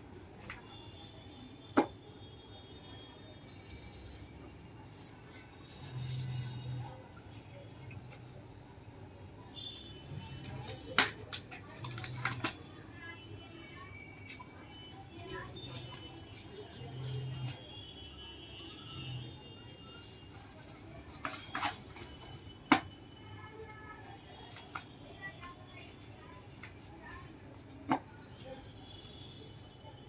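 Paper sheets and cardboard box pieces handled on a wooden work table, with about six sharp knocks spread through as pieces are pressed and tapped down.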